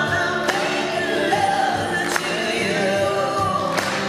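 Several male and female voices singing a song together in harmony, over strummed acoustic guitars and a string section.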